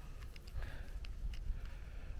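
Low wind rumble on a small handheld camera's microphone, with a few faint clicks and rustles of handling as a clip-on wireless microphone with a windscreen is fitted to it.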